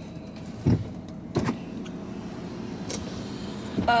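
Road and engine noise inside a moving car's cabin. Two dull thumps about two-thirds of a second apart come near the start, and a light click follows about three seconds in.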